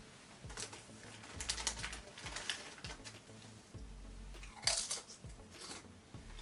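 A crinkly snack packet being handled and crunchy chips being eaten: scattered small crackles and crunches, one louder crackle near the end.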